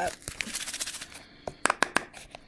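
Glitter mix shifting in a closed plastic tub as the shaking dies away, then a few sharp plastic clicks near the end as a fingernail pries at the snap-on lid.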